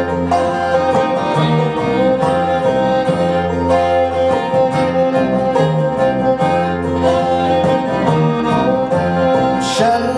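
A bluegrass band playing an instrumental break: fiddle, banjo, acoustic guitar and upright bass, with no singing.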